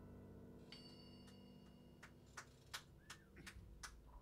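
The last chord of a jazz tune fading out on keyboard and upright bass, with a brief high ringing tone about a second in. In the last two seconds come a few sharp, irregular clicks about a third of a second apart.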